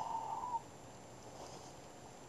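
A man's long, steady held "uhh" sound that cuts off about half a second in, followed by faint room tone.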